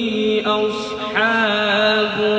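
A man reciting the Quran in slow melodic tajweed style through a microphone and PA, holding one long steady note with a brief gliding melodic turn about a second in.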